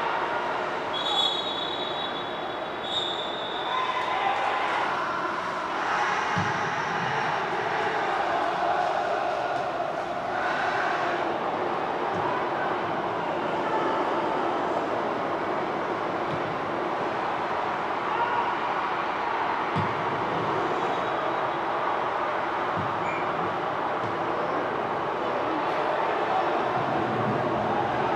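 Pitch-side sound of a football match in a near-empty stadium: a steady wash of noise with players' shouts, two short high-pitched referee's whistle blasts about one and three seconds in, and a few dull thumps later on.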